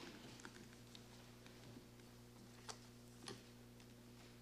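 Near silence: room tone with a steady electrical hum, broken by a few faint, irregular clicks and light paper handling at a lectern microphone. The two clearest clicks come in the second half.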